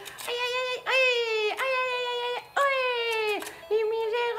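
Battery-powered toy fishing game playing its electronic tune while its fish pond turns: a slow melody of held notes, about one a second.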